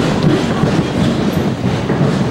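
Several people's footsteps on a hard stage floor, a dense, rapid, irregular patter.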